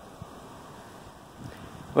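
Wind on the microphone: a steady low rushing, with a couple of faint thumps.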